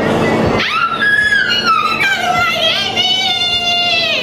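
A woman's long, high-pitched squeal of excited surprise, held for about three and a half seconds, its pitch dropping partway through.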